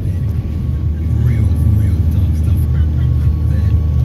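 Steady low rumble of a car's engine and tyres heard from inside the cabin while driving, with a few faint short sounds over it.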